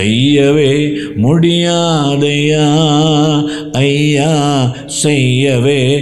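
A man singing a slow Tamil Christian worship song in long held notes, in phrases of one to two seconds with short pauses between them.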